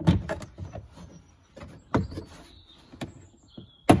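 Plastic interior side trim panel of a Fiat 500 being lined up and pressed onto its clip tabs. A sharp plastic knock comes at the start, a few more are spread through, and there is rubbing and handling noise in between.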